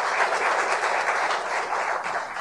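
Audience applauding, the clapping beginning to ease off near the end.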